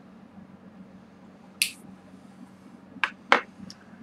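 Mouth sounds from puffing on cigars: a brief hiss of air about one and a half seconds in, then two sharp lip smacks a third of a second apart about three seconds in, over a low steady hum.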